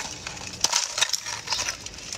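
A thin, clear, brittle sheet snapped apart by hand, giving a few sharp cracks in quick succession.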